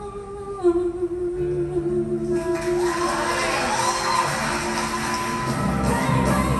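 A woman singing one long held note, played back over a theatre's sound system with the reverberation of the hall; a band's low accompaniment comes in under the note about a second and a half in and the music grows fuller after that.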